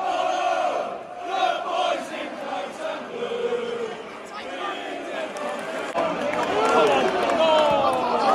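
Football crowd in the stands singing and chanting, many voices at once, growing louder in the last two seconds.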